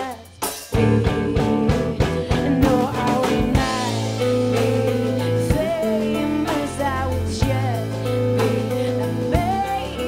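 Live band music: a woman singing over hollow-body electric guitar and drum kit. Just after the start the band drops out briefly, then comes back in together.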